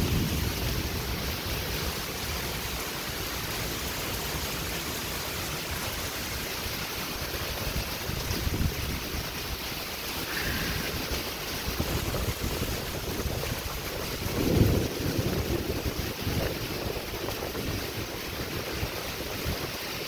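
Heavy rain pouring down in a steady rush, with wind buffeting the microphone. A brief, louder low rumble comes about two-thirds of the way through.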